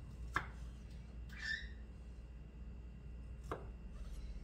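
Kitchen knife slicing fresh mushrooms on a wooden cutting board: two sharp taps of the blade meeting the board, about three seconds apart, with a softer short sound between them.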